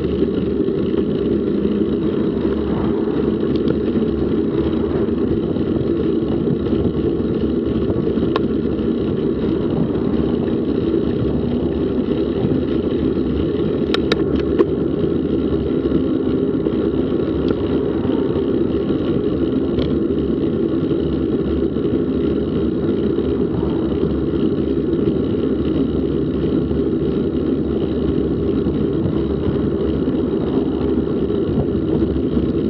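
Car driving at a steady pace: continuous engine and road noise, low and even, with a couple of brief clicks about halfway through.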